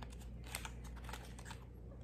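Faint scattered clicks and taps of long fingernails on a small cardboard product box as the item inside is worked out.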